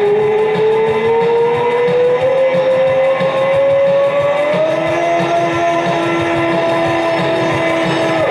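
Rock music over a steady rhythmic beat, led by one long held note that glides slowly upward for about five seconds and then holds steady. A second, lower held note joins about halfway through, and both stop together just after the end.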